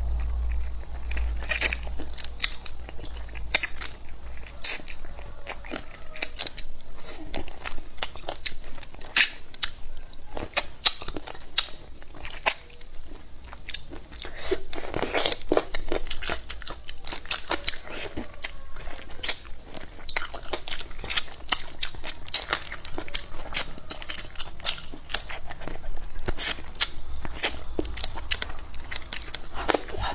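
A person biting and chewing pickled chicken feet, with many sharp, crunchy clicks at an irregular pace.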